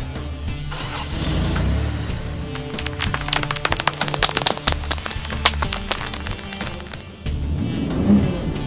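Background music under a cartoon vehicle engine sound effect as a small monster truck drives in. A fast run of short, sharp clicks sounds in the middle.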